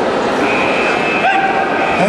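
Spectators shouting and cheering at a karate bout in an echoing sports hall, with a couple of loud drawn-out shouts standing out over the din.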